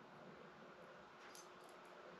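Near silence: room tone, with a few faint brief ticks in the second half.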